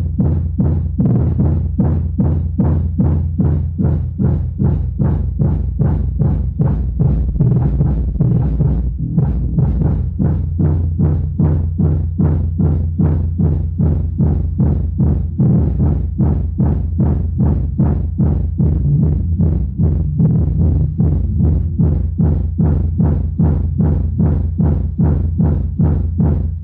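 An Eros Target Bass 3K3 15-inch subwoofer playing loud bass-heavy music with a steady beat, driven at about its rated 3,300 W (around 117 V).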